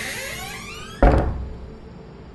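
A dramatic film sound effect: a rising sweep of several pitches climbs for about a second, then cuts to a sudden heavy thud with deep bass that dies away quickly.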